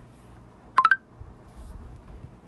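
A short electronic chime of three quick beeps rising in pitch, a little under a second in.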